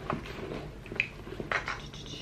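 Hands handling a tote bag and a felt purse organizer insert: rustling with several light knocks and taps, and a brief high squeak about a second in.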